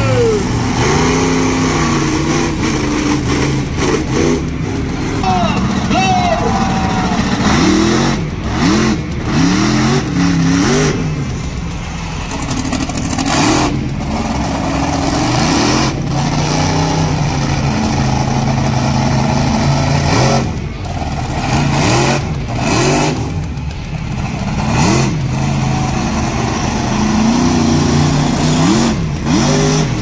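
Monster truck engine revving hard and easing off again and again, its pitch rising and falling with each burst of throttle, with a few brief breaks in the sound.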